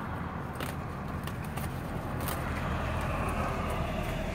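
A road vehicle: a steady low rumble that grows a little louder through the second half.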